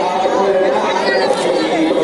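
Many voices at once, layered over one another without a break.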